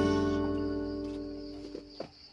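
Acoustic guitar music, its last chord ringing and fading out.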